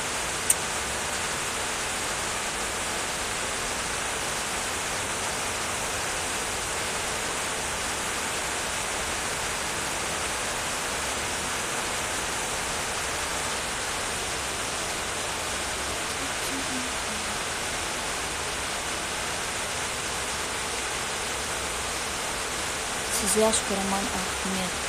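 Steady, unchanging hiss of background noise, with a single sharp click about half a second in.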